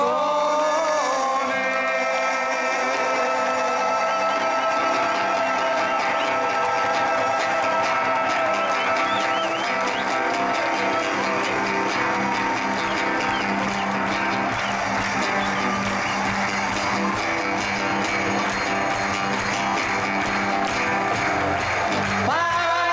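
Live band music amplified through loudspeakers: a steady instrumental passage with guitar, without singing.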